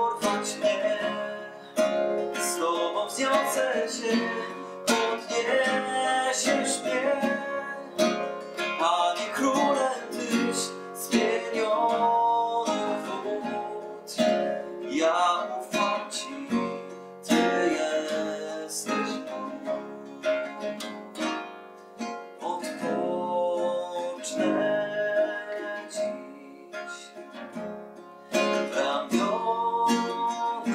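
A man singing a worship song in a steady rhythm over a nylon-string classical guitar, accompanying himself with strummed chords.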